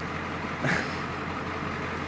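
A vehicle engine idling with a steady low hum, heard from inside the cab, with a brief breathy noise about two-thirds of a second in.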